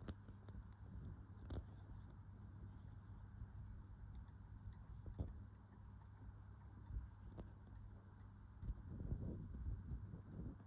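Faint handling sounds of a needle, thread and a bead being worked on cross-stitch fabric as a misplaced bead is lifted off and its threads pulled out: a few soft separate clicks, with a brief rustle near the end, over a low steady hum.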